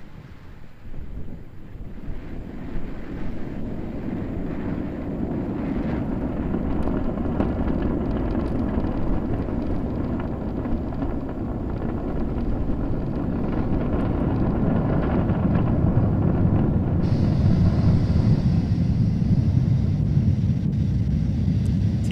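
Falcon 9 first stage's nine Merlin engines at full thrust during ascent, a deep, noisy rumble that grows steadily louder. A higher hiss joins in about three quarters of the way through.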